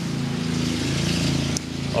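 Petrol lawn mower engine running steadily nearby, a constant low drone, with a brief small click about one and a half seconds in.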